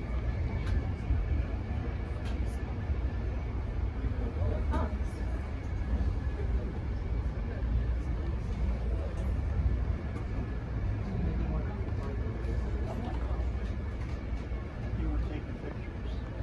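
Interior sound of a moving Amtrak passenger train car: a steady low rumble of the car rolling on the rails, with scattered short clicks and rattles. A faint murmur of voices runs underneath.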